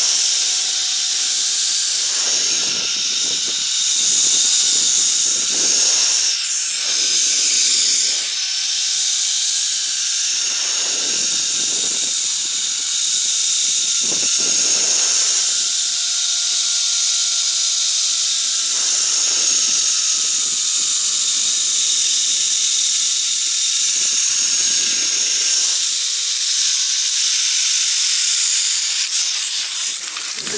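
Zip line trolley pulleys running along a steel cable at speed: a steady high hiss with a faint whine that slowly falls in pitch. Wind gusts buffet the microphone every couple of seconds.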